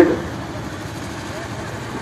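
Steady background noise in a pause of about two seconds between a man's loud spoken phrases.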